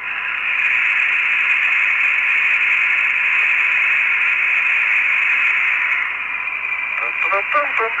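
Steady hiss of an open space-to-ground radio channel, a band of static with a faint steady tone running under it; a voice comes back on the link near the end.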